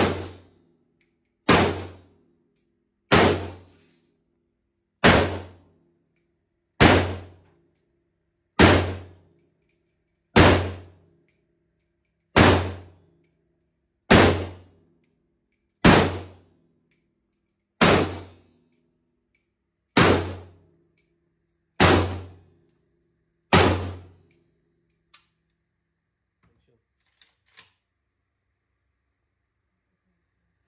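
Micro Draco AK pistol (7.62x39mm) fired in slow single shots: fourteen shots about every one and a half to two seconds, each with a reverberant tail off the walls of the indoor range. The firing stops about three-quarters of the way through, and a few faint clicks follow.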